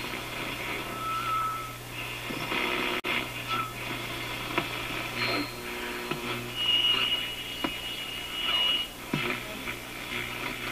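The AM radio of a five-tube General Electric C-411 radio phonograph is being tuned across the broadcast band. Snatches of stations and voices come and go between short whistling tones and static, over a steady low hum.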